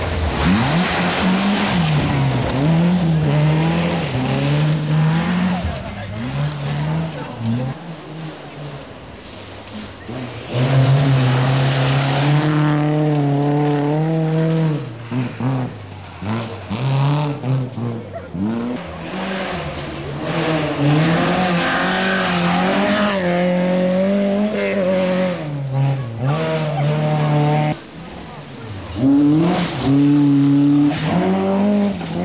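Rally cars passing one after another on a special stage. Each engine revs hard, its pitch rising and falling through gear changes, and there are several separate passes with short lulls between.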